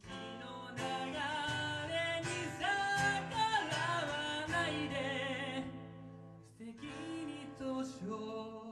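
A man sings with a strummed acoustic guitar in a live rock-band performance. The sound dips briefly about two-thirds of the way through, then picks up again.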